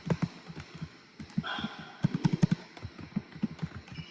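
Soft, irregular low taps and thumps, several a second, coming over a web-conference audio line. A faint voice is heard briefly about a second and a half in.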